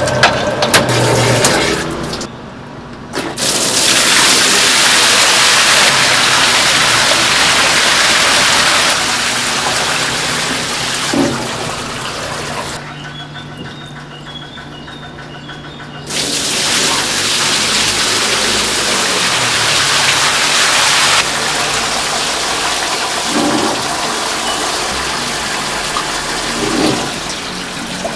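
Water from a hose gushing into a stainless steel trough of raw chicken wings as they are rinsed. The flow falls away for a few seconds about halfway through, then starts up loud again.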